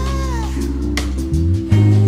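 Live pop-soul band playing a sustained chord under a male singer's held note, which bends and falls away about half a second in. The band keeps playing, the bass moving to a new note near the end.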